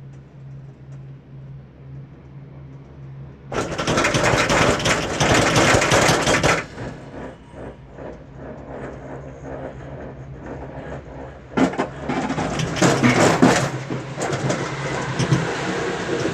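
Girak six-seater gondola heard from inside the cabin as it arrives at the station: a steady low hum with two loud stretches of mechanical rattling and clatter from the detachable cam grip and carrier running through the station machinery, the first about three and a half seconds in lasting about three seconds, the second starting near the twelve-second mark and carrying on.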